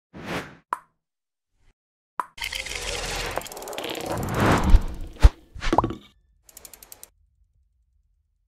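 Sound effects for an animated logo intro: a couple of short pops and clicks, then a dense whooshing swell that builds for about two seconds, a sharp hit a little past five seconds and a few faint quick ticks.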